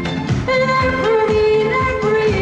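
A female lead singer singing a disco song over a band backing with a steady beat, holding a long note from about halfway through.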